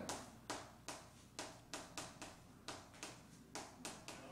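Chalk writing on a blackboard: a quick, uneven series of about a dozen short, faint taps and scratches as the characters are written stroke by stroke.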